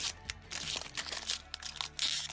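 Foil trading-card pack wrapper crinkling as fingers pick at and pull on its top seal, a run of short irregular crackles; the top seal is stubborn and does not rip easily.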